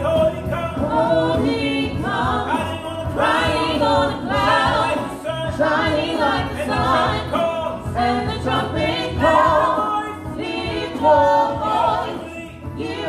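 Gospel praise-and-worship team of two women and two men singing together into microphones.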